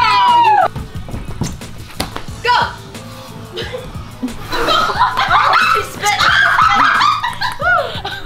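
Background music playing under excited laughing and squealing voices. A high falling squeal comes right at the start, and a long stretch of shrieking laughter runs from about halfway through.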